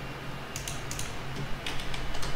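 Light clicking of a computer keyboard and mouse, a handful of separate clicks from about halfway in, over a faint steady low hum.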